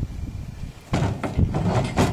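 A cardboard box being dragged across and lifted off a pickup's tailgate, a cluster of knocks and scrapes starting about a second in.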